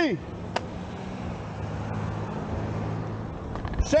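Street traffic with a car engine running close by: a steady low hum over road noise. A shouted word falls away at the start, there is a single click about half a second in, and the next shout begins just before the end.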